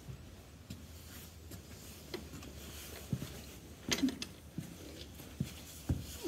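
Harness being handled: scattered light clicks and knocks from leather straps and metal clips and rings, loudest about four seconds in and again near the end.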